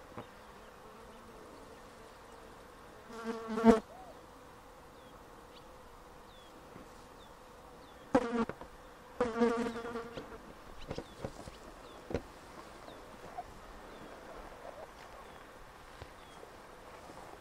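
A flying insect buzzing close past the microphone three times: once about three seconds in, then twice between about eight and ten seconds, each buzz swelling and then dropping away. Faint short high chirps and a few soft clicks sit under it.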